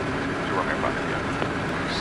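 Steady cockpit noise of a Cessna Citation M2 in the climb: the hum of its twin turbofans and the rush of air over the cockpit, with faint voices underneath.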